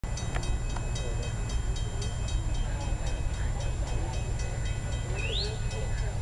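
Railroad grade-crossing warning bell ringing in a steady rhythm of about four strikes a second, signalling that the gates are coming down for an approaching train, over a low rumble.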